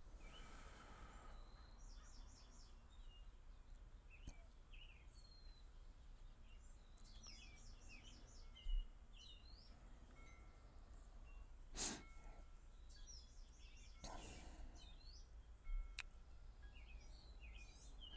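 Quiet pause with faint birds chirping in the background: scattered short high chirps throughout. A few brief soft thumps stand out, the loudest about halfway through.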